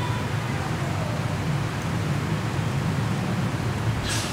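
Steady background noise: a low hum with an even hiss over it, unchanging throughout.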